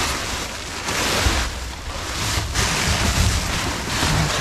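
Clear plastic wrap and plastic bags crinkling and rustling in swells as gloved hands dig through them, over a low rumble of wind on the microphone.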